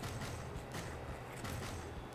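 Faint, soft ticks and scrapes of a fillet knife slicing through a golden tilefish fillet on a cutting board, over a low steady hum.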